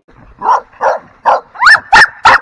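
American Bully puppies barking and yipping in a quick run of five short, sharp barks about 0.4 s apart, starting about half a second in.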